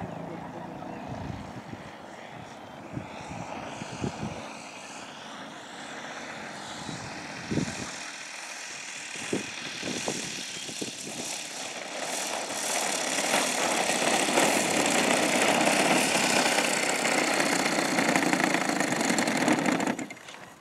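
Engine and propeller of a radio-controlled Yak 54 aerobatic model plane: at first fainter, with its pitch gliding up and down, and a few low thumps, then growing louder from about twelve seconds in and running steadily as the plane taxis close after landing.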